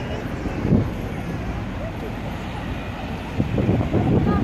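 Street ambience: steady low traffic noise from cars on the road, with indistinct voices of people nearby that grow louder near the end.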